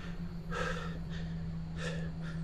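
A person's sharp, breathy gasps, two short breaths, over a steady low hum.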